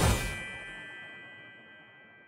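Logo sting sound effect: a swell ends in a hit at the start, then a bright, chime-like ding rings on and fades away slowly.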